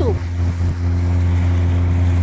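A small boat's engine running steadily while under way: a low, even drone with water and wind noise.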